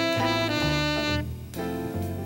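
Live small-group jazz: a saxophone plays long held notes over the rhythm section. A little past halfway the horn line briefly drops out, then it picks up again.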